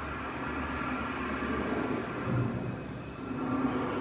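Aircraft engine rumble with a steady whine from an exhibit's soundtrack, played over speakers in a large hall.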